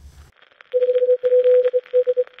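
Morse-code-style telegraph beeping: one steady mid-pitched tone keyed in short and long beeps in an uneven rhythm, starting a little under a second in, over a thin radio-like hiss. It is the sound effect of a news-bulletin interruption.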